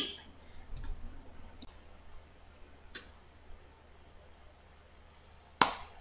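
Quiet room tone with a low steady hum, broken by a few faint short clicks and one sharp click near the end.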